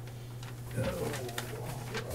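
A man's quiet, low-pitched "oh" about a second in, over a steady low electrical hum, with a few light ticks and rustles of paper being handled.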